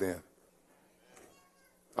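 A man's voice ends a word in the first moment, then near silence. About a second in comes one faint, brief, slightly pitched sound.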